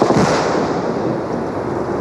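An explosion goes off at the very start, a sharp blast followed by a long noisy wash that slowly fades. Another sharp bang comes right at the end.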